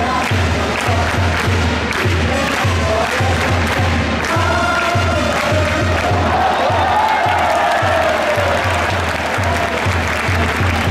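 Baseball cheering section chanting a batter's cheer song over a steady bass drum beat, about two beats a second, with the crowd noise swelling toward the end.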